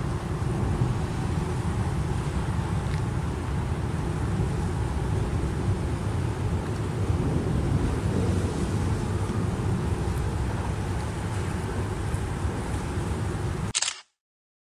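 Steady low rumble of road traffic on the suspension bridge's deck, mixed with wind. It cuts off suddenly near the end.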